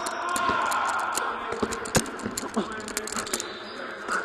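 Pickup basketball in a large gym: a few sharp basketball bounces on the hardwood floor, the loudest about two seconds in, over distant, echoing voices.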